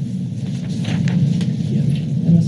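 Low steady rumble of room background noise, with a few faint brief ticks about a second in.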